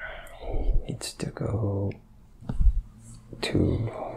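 A man speaking softly and haltingly, close to a whisper, in two or three breathy spurts, with small mouth clicks between them.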